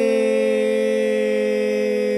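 Shofar (ram's horn) blown in one steady, held note with a buzzy, horn-like tone.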